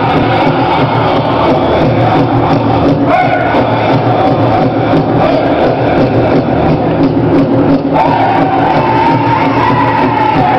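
Powwow drum group singing a fancy shawl song: voices sung together in a high, held pitch over a steady beat on a large drum. The singing leaps to a higher phrase about eight seconds in, with crowd chatter beneath.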